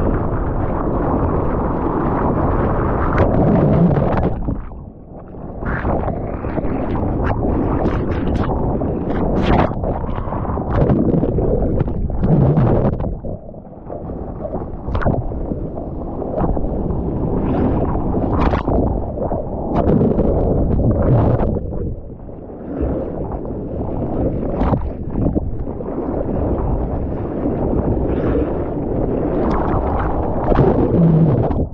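Ocean whitewater churning and splashing around the nose of a paddling surfboard, with foam and spray slapping the board and the camera. It comes in surges with a few brief lulls.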